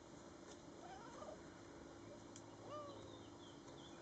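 A cat meowing faintly, twice: a short wavering call about a second in, then a longer call that rises and falls away near three seconds in.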